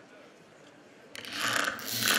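Microphone handling noise: two short bursts of scraping and rustling, starting about a second in.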